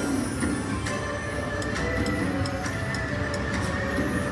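Autumn Moon slot machine playing its free-games bonus music as the feature starts, with held steady tones and a run of light ticks from about a second and a half in, over a steady low rumble.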